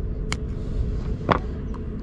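Steady low background rumble with two short clicks, one about a third of a second in and one a little after a second in.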